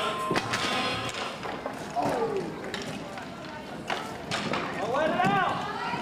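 Indoor roller hockey rink: hockey sticks and the puck knocking on the floor at a faceoff and in play, with indistinct shouts from players and onlookers, including a drawn-out shout about five seconds in.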